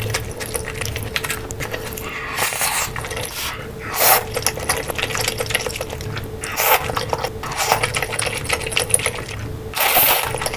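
Close-miked eating: noodles slurped in several short bursts, the loudest about four seconds in, with chewing and wet mouth sounds between them. A steady faint hum runs underneath.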